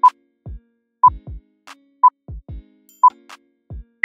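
Interval-timer countdown: four short beeps at the same pitch, one per second, over a sparse electronic beat of kick drums.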